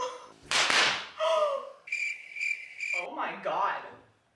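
A cricket-chirp sound effect: a high, pulsing chirp that starts and stops abruptly and lasts about a second in the middle. Short bursts of voice come before and after it, with a brief hiss about half a second in.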